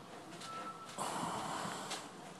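A single audible breath, noisy and unpitched, lasting about a second and starting halfway through.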